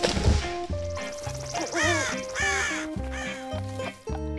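Background music with steady notes and a bass line, broken at the start by a short noisy burst. A little over one and a half seconds in, an animal gives two arching, harsh cries, one after the other.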